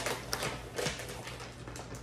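Plastic food bag crinkling and rustling as its resealable top is pulled open, a run of irregular crackles and clicks.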